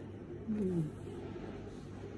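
A woman's short, closed-mouth "mmm" hum, falling in pitch, about half a second in, as she eats a shrimp.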